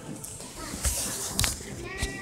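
Handling noise: a short rustling burst just under a second in, then a sharp knock about one and a half seconds in.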